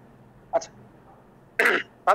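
A person clearing their throat once, a short rough burst about a second and a half in, preceded by a brief small sound half a second in, over a faint steady hiss.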